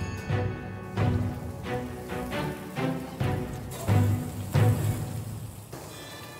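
Background music with a steady low beat.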